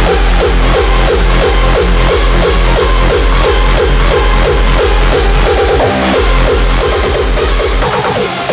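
Hardcore techno (gabber) music: a fast, pounding kick drum under a repeating synth riff of short falling stabs. About six seconds in the kicks tighten into a quick roll and briefly drop out before the beat carries on.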